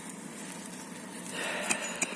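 Faint scratching of a small hand cultivator's tines raking through dry soil and leaf litter, a little louder in the second half, with a couple of sharp ticks near the end.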